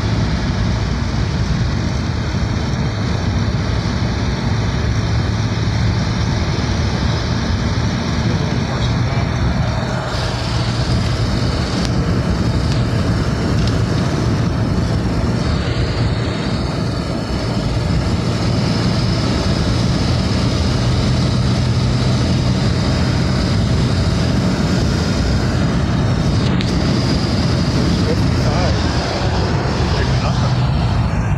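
1938 Graham Sharknose six-cylinder engine pulling steadily at highway cruising speed, heard from inside the car. A low steady engine hum sits under loud, even wind and tyre noise.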